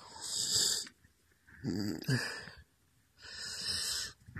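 Three heavy breaths close to the microphone, each about a second long, with a rough, rasping edge.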